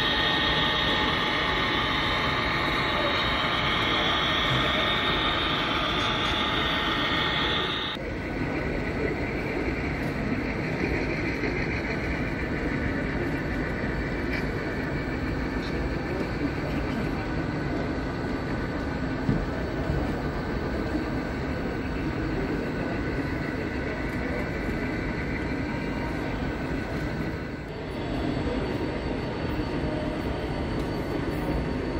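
HO-scale model trains running on an exhibition layout under the steady background hubbub of a busy hall. The sound changes abruptly about eight seconds in, from a brighter mix to a duller one.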